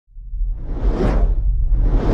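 Intro sound-design whoosh swelling up out of silence and peaking about a second in, over a deep low rumble, as a logo animation begins.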